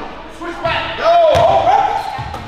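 Players' voices calling out on an indoor basketball court, with a loud shout in the second half and a sharp slap of the basketball just over a second in, ringing in the echoing gym.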